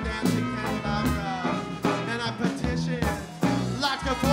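Live band playing an upbeat song with drums and electric guitars, a male voice singing over it.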